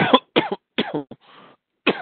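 A man coughing repeatedly in a fit: three loud coughs in quick succession, then another near the end, louder than his speaking voice.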